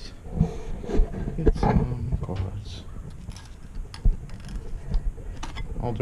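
A man's indistinct mumbled voice among knocks and thumps of objects being handled, the sharpest knock about four seconds in.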